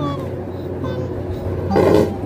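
A boy dropping backwards from a squat onto a tiled floor, a short thump near the end, over a low steady hum.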